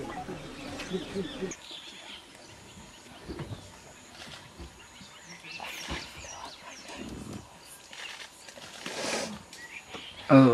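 A tiger feeding on a fresh kill: scattered soft crunching and tearing sounds, with a few louder cracks about six and nine seconds in.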